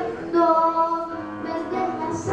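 A girl singing into a microphone with piano accompaniment, holding one long note about half a second in before moving on to shorter, lower notes.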